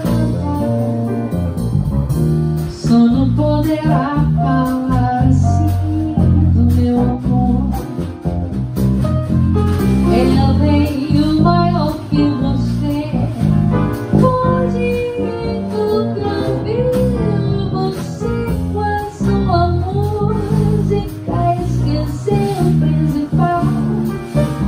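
Live jazz combo playing: a woman singing into a close microphone over grand piano, bass and drums, with cymbals ticking throughout.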